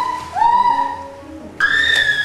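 Soundtrack music: a whistle-like melody of held notes, each sliding up into its pitch, over quieter lower notes. One note enters about a third of a second in, and a higher one comes in near the end.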